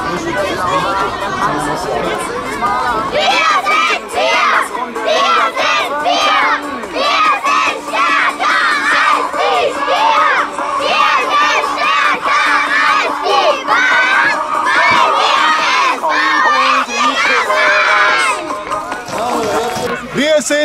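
A group of young children shouting and cheering together as a team, many high voices overlapping. It starts about three seconds in and dies down near the end.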